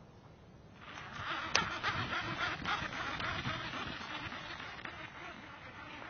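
A Lew's Speed Spool Mach 2 fishing reel being cranked, giving a whirring, finely ticking rattle of gears and line for a few seconds. One sharp click comes about a second and a half in, and the whirring fades out near the end.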